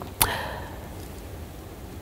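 A single sharp hit about a quarter of a second in, its ringing tail fading away over most of a second, followed by faint steady hiss.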